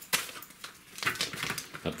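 Light clicks and rustling from a paper pouch of potato flakes being picked up and handled, starting with one sharp click.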